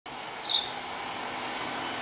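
A single short, sharp, high bird call about half a second in, over a steady background hiss.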